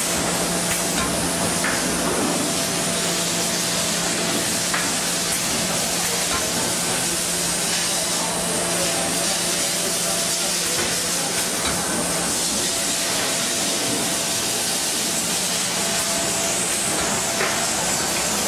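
Horizontal packaging machine running: a steady hiss with a low hum that stops about two-thirds of the way through, and a few light clicks.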